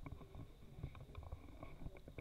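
Faint handling noise of a book on a tabletop: a few soft, scattered taps and knocks over quiet room tone.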